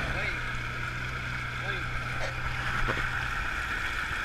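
Side-by-side UTV engine running with a steady low drone while the vehicle sits buried in deep mud, along with wind noise on the mounted camera's microphone.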